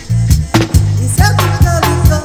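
Roots reggae track: a deep, heavy bassline under regular drum hits, with a melody line of sliding notes coming in a little past a second in.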